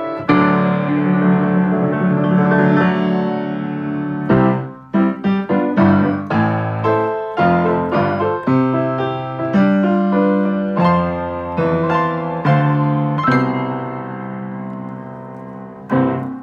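A 5-foot-7 grand piano played by hand: held chords for the first few seconds, a short break about four seconds in, then quicker struck notes and chords, ending on a chord left to ring out and fade.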